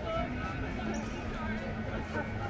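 Voices of people talking nearby on a crowded promenade, overlapping chatter, with a steady low hum coming in about a second in.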